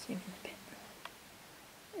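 A woman's short, soft spoken word at the start, then a quiet pause of room tone with one small click about a second in.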